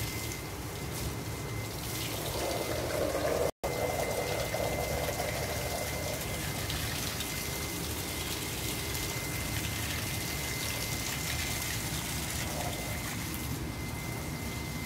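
Water spraying steadily from a garden hose nozzle onto a plant and wall, a continuous splashing hiss.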